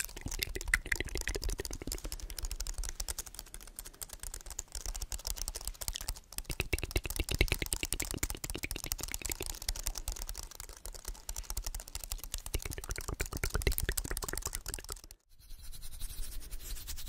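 Rapid, continuous clicking of the keys of a slim white aluminium-framed keyboard held close to the microphone, fingers pressing and tapping many keys a second. The clicking breaks off briefly near the end.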